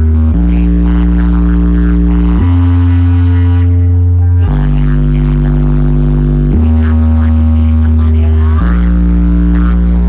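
DJ dance music played loud, built on long held deep bass notes that change pitch about every two seconds.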